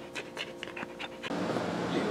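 A dog panting quickly at close range, about five short breaths a second, over a faint steady hum. About a second and a half in, the panting gives way to a steady hiss.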